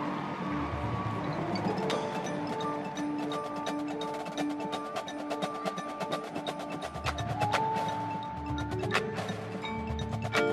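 High school marching band playing a soft, percussion-led passage: held notes with a fast, even ticking of mallet or wood-block strokes that starts about two seconds in, and a few low drum hits.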